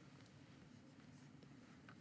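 Near silence: faint room tone, with one small click near the end.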